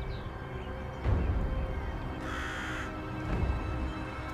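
A crow caws once, a harsh call of under a second about two seconds in, over background music with low beats.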